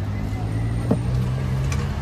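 Busy street: a motor vehicle engine running close by with a steady low hum, a sharp click about a second in, and people's voices around.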